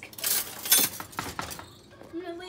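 Dishes and utensils clinking and rattling in an open dishwasher's rack as it is rummaged through: several sharp clinks over about a second and a half.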